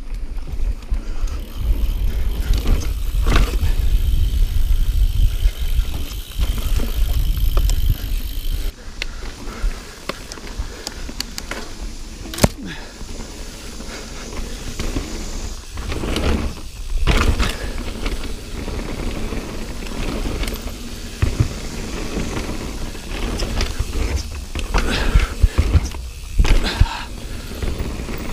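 Mountain bike ridden fast over a dirt singletrack trail: steady rumble of the tyres and wind on the camera microphone, with irregular knocks and rattles as the bike hits bumps and rolls onto wooden trail features.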